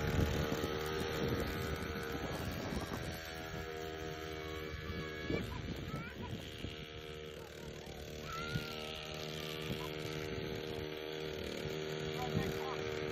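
A child's mini dirt bike motor runs at low speed with a steady whine. It grows quieter around the middle as the bike moves away and louder again toward the end.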